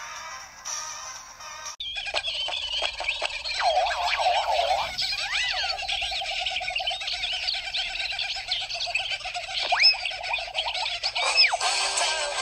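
Soundtrack audio that cuts off abruptly about two seconds in, followed by a dense chorus of chirping, whistling calls with quick rising and falling pitches, mixed like a music track.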